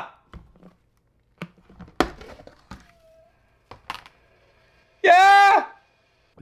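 Handling of a plastic takeout container and its lid: a few sharp clicks and knocks, the loudest about two seconds in. A man's short high-pitched vocal exclamation follows near the end.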